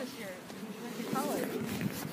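Faint voices speaking briefly, twice, over a steady outdoor background noise.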